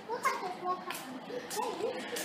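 Faint children's voices chattering in the background, with a few soft clicks.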